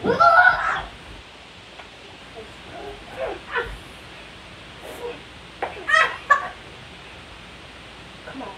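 A person's loud gasping cry right at the start, then a few shorter non-word yelps about three seconds in and a louder, higher one about six seconds in.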